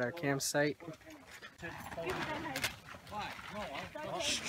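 People talking: a man's voice briefly at the start, then quieter voices in the background.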